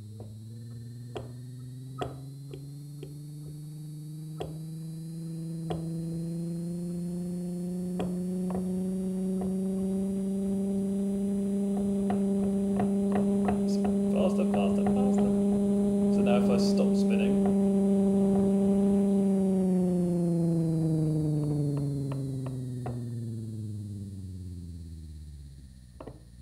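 Small electric motor running on the pulsed output of a flywheel-driven alternator, giving a steady hum. Its pitch climbs over the first ten seconds or so, holds, then sinks and fades over the last few seconds as the motor slows. A few faint clicks sound along the way.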